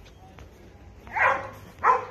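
A dog barking: two loud barks in the second half, about three-quarters of a second apart.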